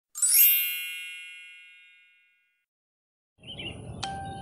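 A single bright chime sound effect, struck once and ringing away over about two seconds. Faint outdoor background with a chirp or two comes in near the end.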